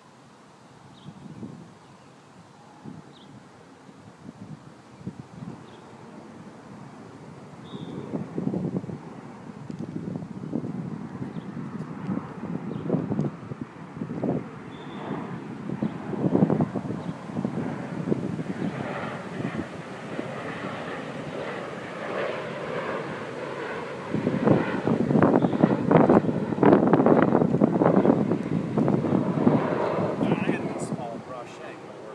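Engine noise from a passing vehicle, building gradually over about twenty seconds and loudest in the last six seconds, with wind buffeting the microphone.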